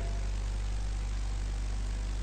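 A steady low hum with an even hiss above it, unchanging in level.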